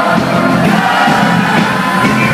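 Loud live party-band music with singing over it and crowd noise.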